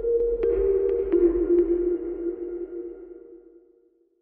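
Short electronic logo sting: a held synth tone that drops a little in pitch about a second in, with a few light ticks over it, fading out near the end.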